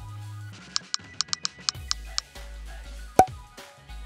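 Smartphone keyboard tap sounds: a quick run of about nine short, sharp clicks, followed by one louder single click about three seconds in, over background music.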